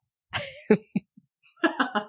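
A person coughs once, sharply, followed by a few short voiced sounds and a bit of speech near the end.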